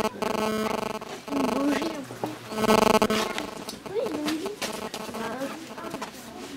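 Indistinct human voices: talk and vocalising with pitch rising and falling, no clear words.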